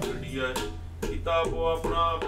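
Gurbani kirtan: voices singing over harmonium with tabla strokes, dipping briefly, then a louder sung phrase coming in about a second in.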